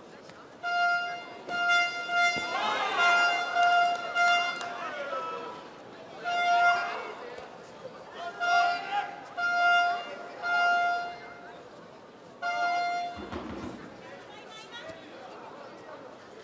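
A single-pitched horn tooted over and over in short blasts, in bursts of several notes, over shouting from the crowd.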